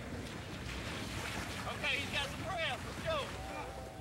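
Outdoor boat-and-water noise with wind on the microphone as an inflatable outboard rescue boat comes ashore, with a few short, high shouted calls around the middle.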